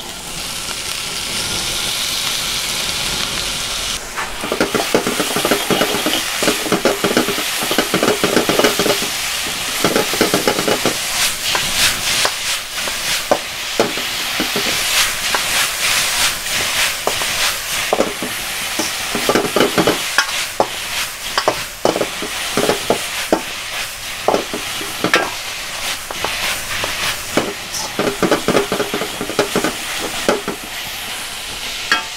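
Shredded cabbage and squid balls sizzling in a hot wok. From about four seconds in, a metal spatula scrapes and clatters against the wok in quick, irregular strokes as the food is stirred and tossed, over the steady sizzle.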